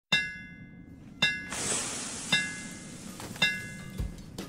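Opening of a podcast intro music track: four evenly spaced bell-like metallic strikes, about one a second, each ringing on, with a hissing wash coming in about a second and a half in.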